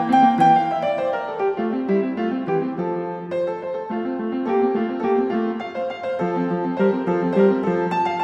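Piano music: a continuous flow of notes and chords at an even pace.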